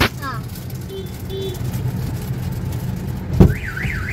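A sharp thump about three and a half seconds in, then an electronic alarm starts, its tone warbling up and down about three times a second, over the steady low hum of a car cabin. Two faint short beeps come about a second in.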